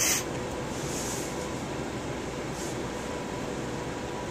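Electric fan running steadily: an even whirring hiss with a faint steady hum.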